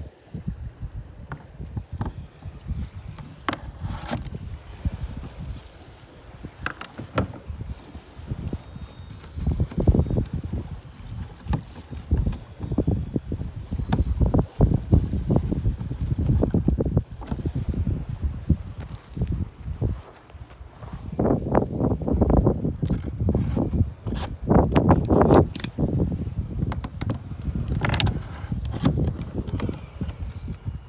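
Wind buffeting the phone's microphone in irregular gusts of low rumble, with scattered clicks and knocks from the phone being handled.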